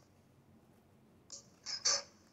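Scissors cutting through a paper napkin: about three short snips close together near the end, after a quiet stretch.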